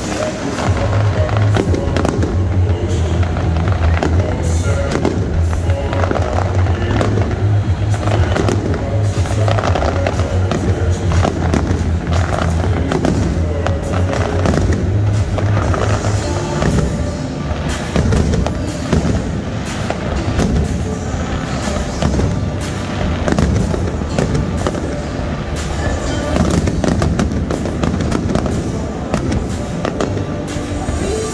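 Aerial fireworks display bursting over a stadium, many bangs and crackles in rapid succession, with music playing along.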